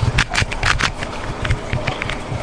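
Wooden Rubik's cube handled in the fingers: a quick run of clicks and clacks in the first second, then sparser, softer knocks.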